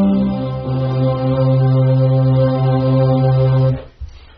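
Music of long sustained tones, several held together. The low note steps down shortly after the start, holds steady, and stops sharply just before the end.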